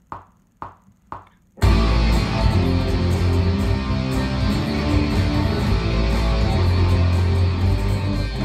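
Three count-in clicks about half a second apart, then a full rock backing track starts with an electric guitar played along over it, with heavy bass.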